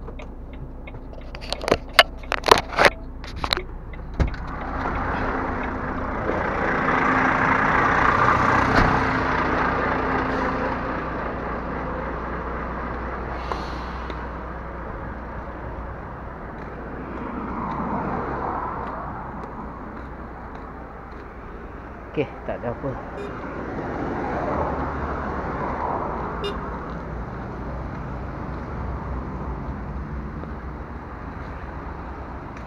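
Road traffic passing on a city street, its noise swelling and fading three times, over a steady low engine hum. A quick run of sharp clicks and knocks comes a couple of seconds in.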